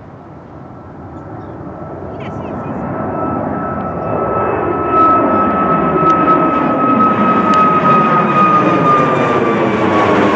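Boeing 737 MAX 8's CFM LEAP-1B turbofans at takeoff climb power, a jet growing steadily louder as it climbs out overhead. A high fan whine runs through the noise and sinks slowly in pitch. It is at its loudest from about halfway through.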